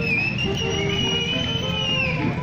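A traditional band playing dance music: a steady low pulse under short, stepping melody notes. Over it one long, high whistle is held for about two seconds.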